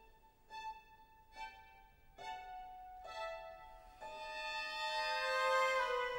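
Classical-era orchestral symphony music led by violins: soft, separate chords about once a second, then from about four seconds in a held chord that swells louder.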